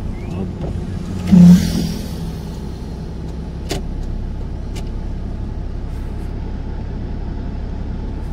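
A vehicle's engine running steadily at low road speed, heard from inside. About a second and a half in, an oncoming motorcycle passes close by with a brief, loud rush of engine noise. A single sharp click comes a little later.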